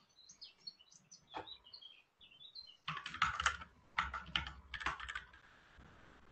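Computer keyboard typing in three short bursts of clicks starting about halfway through, with faint bird chirps in the background before it.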